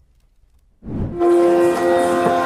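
Near silence for most of the first second, then a brief low swell and a steady drone of several held tones: the shruti drone that accompanies Yakshagana singing.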